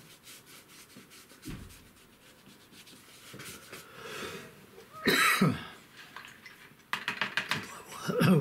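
Faint strokes of a paintbrush on paper, then a single loud cough about five seconds in. Near the end comes a quick run of short rubbing strokes.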